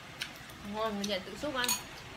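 Cutlery clinking against bowls and plates at the table in a few short, sharp clicks, with a voice briefly in the middle.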